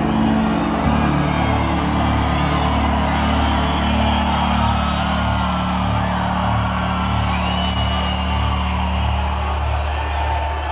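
Electric bass and guitar holding low, sustained drone notes at a heavy metal concert; the held notes change about a second in and thin out near the end. A crowd cheers loudly over them, with a few whistles.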